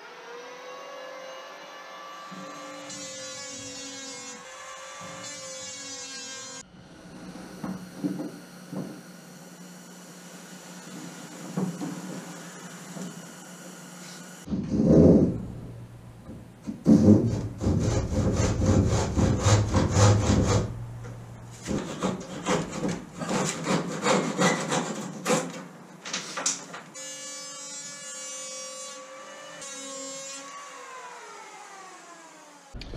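Electric hand planer spinning up and running with a steady whine as it shaves the plywood sheer edge of a boat hull. Then a handsaw cuts wood in loud, rapid strokes, and the planer's whine returns near the end.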